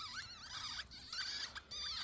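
Newborn ferret kits squeaking: a string of high, wavering little squeaks, several overlapping, with only short pauses between them.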